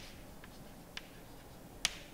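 Chalk tapping and scratching on a chalkboard as a word is written: a few faint, sharp clicks about half a second apart, the loudest near the end.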